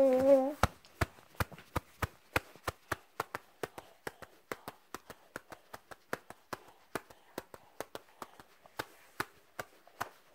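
A fussing baby's whiny cry cuts off about half a second in, followed by a steady run of soft pats, about three a second: a parent patting the baby to settle it to sleep.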